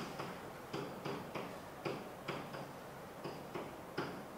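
Pen or stylus tapping and clicking against an interactive whiteboard as numbers are written: about a dozen light, irregularly spaced ticks.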